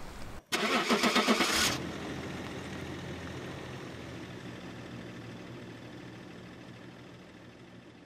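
A car engine starting: a loud burst of cranking and catching about half a second in that lasts a little over a second, then a steady idle that slowly fades away.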